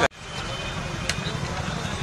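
An abrupt cut with a click, then steady outdoor street noise: a low traffic rumble with faint background voices and a small tick about a second in.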